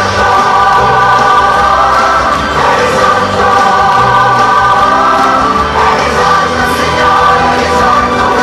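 A group of voices singing together, choir-style, over loud instrumental accompaniment with a bass line moving note by note.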